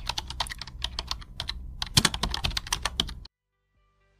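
Typing sound effect: a rapid, irregular run of key clicks that stops abruptly after about three seconds.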